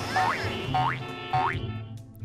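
Cartoon sound effect: three short rising tones, about half a second apart, over soft background music that fades near the end.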